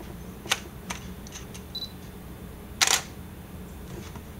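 Canon 60D DSLR taking a shot from the BG-E9 battery grip's shutter button. A click comes first, then a short high focus-confirmation beep, and about a second later the mirror and shutter fire in a quick double snap, the loudest sound.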